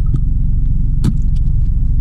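Steady low rumble of a Honda Civic heard from inside the cabin, with one sharp click about a second in.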